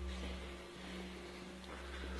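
Faint steady low hum with an even hiss: the background noise of a handheld phone recording in a quiet hallway.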